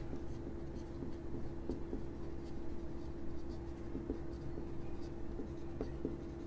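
Marker pen writing on a whiteboard: faint, irregular scratching strokes of the tip on the board, over a steady low hum.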